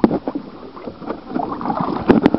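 Water sloshing and bubbling around a waterproof compact camera held underwater, heard muffled through its body, with a few sharp clicks and knocks from the hand handling it.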